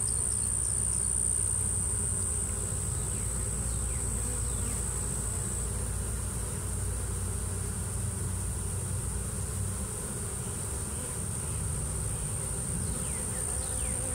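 Honeybee swarm buzzing: a steady, even hum from the mass of bees on the ground at close range, with a steady high-pitched whine running above it.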